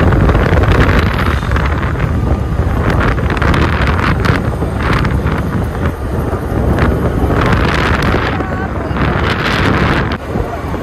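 Heavy wind buffeting the microphone of a scooter moving along a road, with the vehicle's running noise underneath.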